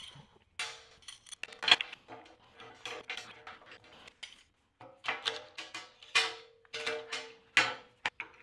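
A large metal C-clamp clanking and scraping against a steel welding table and flat-bar pieces as it is worked into place by hand. The knocks are irregular, with several sharp clanks and a lingering metallic ringing.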